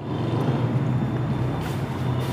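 Steady low rumble and hiss of background noise with a low hum, swelling over the first half second and then holding.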